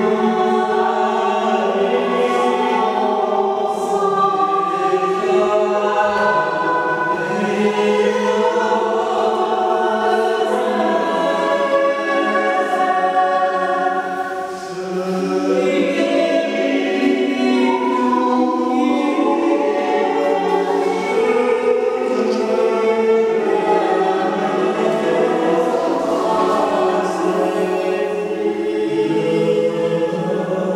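Choral singing: several voices holding long, overlapping notes, with a brief lull about halfway through.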